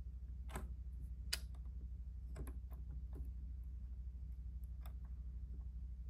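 A handful of light, irregularly spaced clicks from a 9-volt battery's terminals being held and shifted against the wire leads of a model building to power its lights, over a steady low hum.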